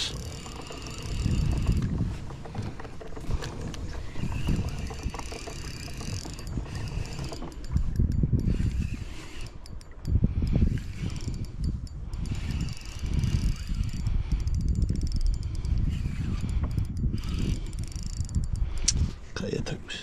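Pedal drive of a fishing kayak being pedalled: mechanical clicking and whirring, with uneven low thumps every second or two.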